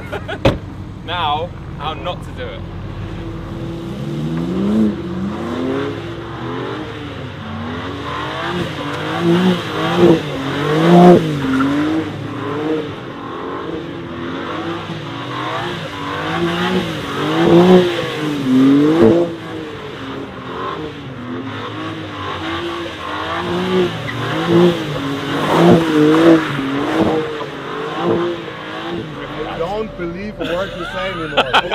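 BMW M4 Competition's twin-turbo 3.0-litre inline-six revving up and down over and over as the car is held in a drift on a wet skid pan. The engine note rises and falls every second or two with throttle changes.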